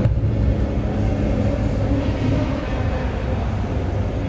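Steady low rumble of background noise in a large hall, with no distinct single event.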